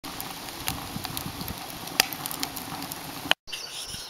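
Wood fire crackling in the fire chamber of a small wood-burning camp stove, with scattered sharp pops, the loudest about two seconds in. The sound breaks off suddenly near the end.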